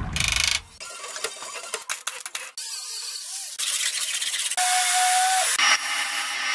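A rapid cut-together sequence of short body-shop work sounds, hissing and clattering in spells that change abruptly every second or so, opening with a falling whoosh. There is a brief steady whine about two thirds of the way in, and near the end a paint spray gun's air hiss.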